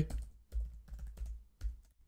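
Computer keyboard keystrokes: a short, irregular run of key clicks as a line of code is typed.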